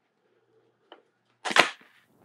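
Chin bar of a Harley-Davidson Capstone H24 modular motorcycle helmet swung down and latching shut with one sharp snap about a second and a half in, after a faint tick just before the one-second mark.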